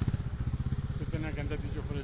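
Trials motorcycle engine idling steadily with a fast, even low putter, with a faint voice briefly in the background.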